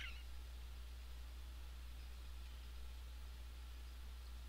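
Quiet room tone of a screencast recording: a steady low electrical hum with faint hiss, and a brief faint sound right at the start.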